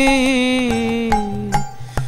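Devotional song: male voices hold the last note of a sung line, wavering slightly and sliding down before dying away near the end, over harmonium, with a few hand-drum strokes.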